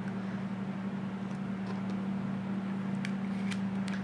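A steady low background hum, with a few faint light ticks in the second half as a plastic embossing folder with cardstock inside is handled.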